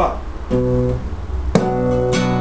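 Classical (nylon-string) guitar playing a rumba rhythm. A chord rings in about half a second in, then a sharp strum comes about a second and a half in and rings on.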